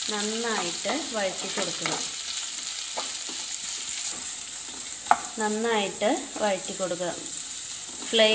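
Sliced onions sizzling steadily in hot oil in a non-stick wok while a wooden spatula stirs them, with a sharp knock about five seconds in.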